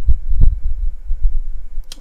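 Low rumbling thuds on the microphone, with two sharper knocks in the first half second and no speech.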